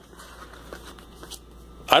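Soft rustling and handling noise with a few faint ticks over a low hum.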